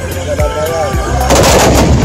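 Volley of black-powder muskets fired together by a line of charging tbourida horsemen: one loud, rolling blast that starts about one and a half seconds in, heard over background music.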